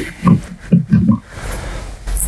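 A man laughing, a chuckle in four or five short bursts over about the first second.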